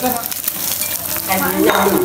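Pieces of meat sizzling on a hot grill pan, a steady hiss of frying.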